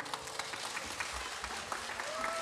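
Audience applause: many hands clapping steadily, with single claps standing out.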